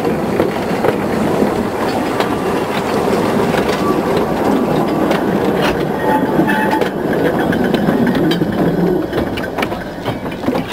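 Narrow-gauge train of carriages behind a small steam locomotive rolling past close by, wheels clattering over the rail joints, with a few brief wheel squeals on the curve. The sound eases off near the end as the last carriage goes by.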